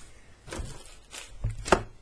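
Handling noise from a plastic-wrapped LED ceiling light being moved on a tabletop: about four short knocks with plastic rustle, the loudest knock near the end.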